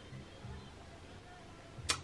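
Quiet room tone during a pause in a woman's talk, ending with a single sharp mouth click, a lip smack just before she speaks again.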